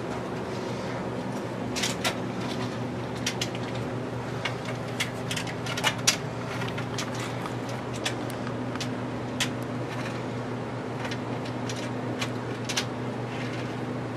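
Light clicks and taps of HO-scale model freight cars being handled and set on the rails, the loudest a close pair of sharp clicks about six seconds in, over a steady low hum.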